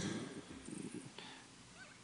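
A pause in a man's speech at a podium microphone: the end of his last word fades out in the first half second, leaving faint room tone.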